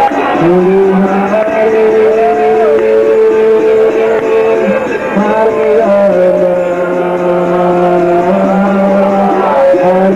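Loud live stage music: a slow melody of long held notes, each lasting a couple of seconds, over a continuous accompaniment.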